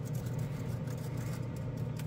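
Steady hum of a spray booth's exhaust fan, with faint soft scratches of an anti-static brush sweeping dust off a plastic model car body.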